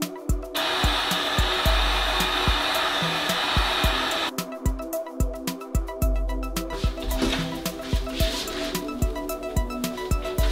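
Heat gun blowing steadily for about four seconds, then cutting off, over background music with a steady beat.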